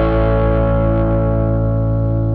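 Distorted electric guitar chord ringing out and slowly fading.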